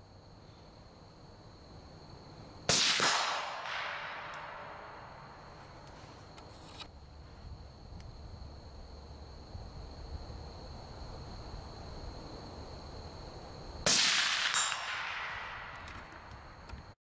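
Two rifle shots about eleven seconds apart, each a sharp crack trailing off into a long echo. A fainter crack follows the second shot under a second later.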